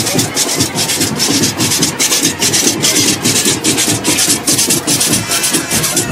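Metal güiras being scraped in a steady marching rhythm, about four rasping strokes a second, with the band's percussion underneath.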